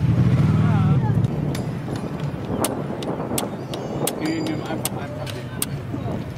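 Flintlock musket's lock being worked by hand: a series of sharp, irregular metal clicks and taps. A low hum runs under the first second and then drops away.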